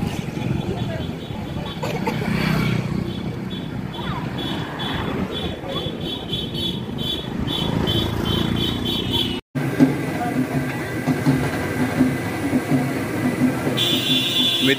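Street sounds of walking along a road: traffic and voices in the background, with a fast run of short, high beeps or ticks through the middle. A sudden cut about two-thirds in gives way to puris frying in a deep iron kadhai of hot oil, a steady sizzle under voices.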